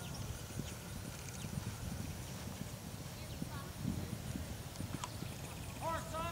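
Hoofbeats of a horse cantering on grass turf.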